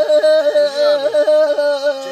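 Two Black Sea kemençes (Karadeniz kemençesi, small three-string bowed fiddles) playing together: a quick, ornamented melody over a steady held drone note.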